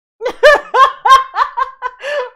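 A woman laughing loudly in a quick run of about seven high-pitched 'ha' bursts, starting a moment in.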